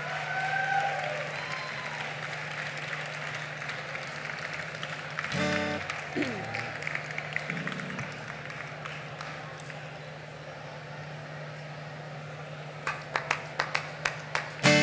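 Festival crowd applauding and calling out after a song, the applause slowly dying away over a steady stage hum. A guitar chord sounds briefly about five seconds in, and a few picked guitar notes come near the end as the next song is readied.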